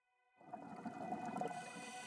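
Ambient background music fading in about half a second in: several held synth tones over a low rumble, growing louder.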